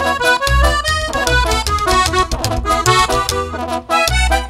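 Accordion playing a quick melodic run in an instrumental break of a live norteño corrido, over a pulsing bass line.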